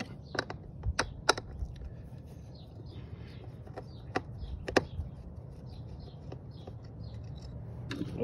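A handful of small, sharp clicks and taps from a screwdriver and fingers working the screws and connector of a car's mass airflow sensor, most of them in the first five seconds, over a low, steady background hum.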